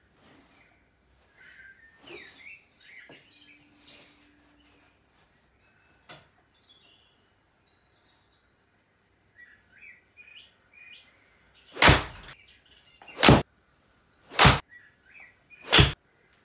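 A golf club strikes a ball off a rubber hitting mat about two seconds in, a faint short smack, amid faint scattered chirps. Near the end come four loud, sharp knocks, a little over a second apart.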